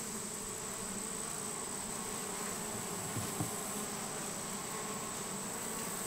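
Honeybees buzzing steadily around an open hive's top bars, with a thin, steady high-pitched whine throughout.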